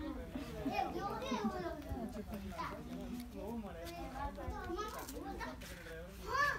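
Young children's voices babbling and chattering, with a low steady rumble underneath.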